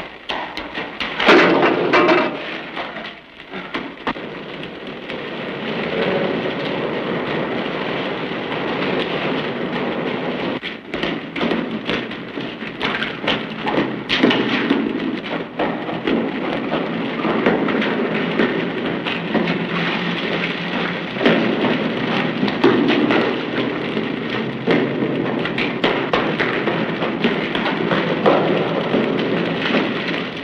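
Water pouring and dripping in a concrete storm-drain tunnel, a steady, echoing rush with scattered sharper splashes or knocks and a louder surge about a second in.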